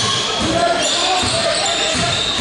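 Basketball game sounds in a large gym: sneakers squeaking on the hardwood court, a ball bouncing, and players' and spectators' voices ringing through the hall.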